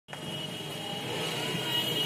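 Street traffic noise: a steady rumble of vehicles with a thin, steady high-pitched tone running through it.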